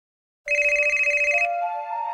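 A telephone ringing once, a fast trill about a second long that starts about half a second in, then held musical tones stepping up in pitch.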